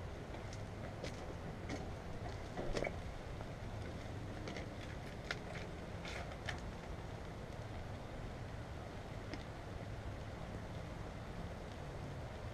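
Steady low hum and faint hiss of food cooking on a propane grill's griddle, with a few light ticks and clicks of utensils in the first half.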